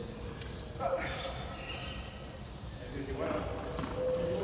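A hard handball pelota being struck by hand and smacking off the frontón wall and floor in a rally, with voices.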